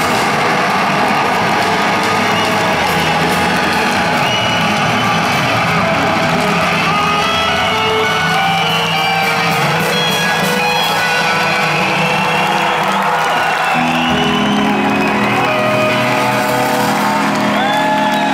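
A rock band's live song ending, its last chord ringing out and sustaining, with a concert crowd cheering and whooping. A new steady low tone comes in about fourteen seconds in.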